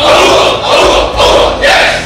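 A large group of soldiers shouting together in unison: one loud massed yell lasting about a second and a half, with a new shout starting near the end.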